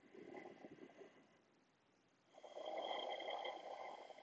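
A person breathing audibly close to the microphone: a faint breath about a second long, then a louder, longer breath starting about two seconds in.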